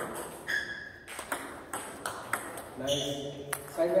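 Table tennis ball clicking sharply off the paddles and the table during a serve and return, a string of quick, uneven clicks.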